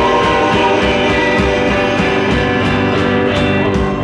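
A live rock band playing loudly: electric guitar to the fore over bass and a steady drum beat.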